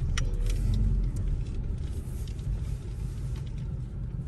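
Steady low rumble of a Kia car's engine and tyres heard from inside the cabin while it is driven up an icy hill, with a few faint clicks.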